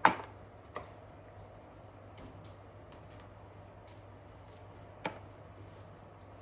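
Kitchen knife and kohlrabi pieces knocking on a wooden cutting board: one sharp knock at the start, a softer one under a second later, a few faint clicks, and another knock about five seconds in, over a low steady hum.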